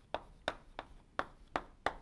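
Chalk tapping against a blackboard as a word is written: about six sharp taps, roughly three a second.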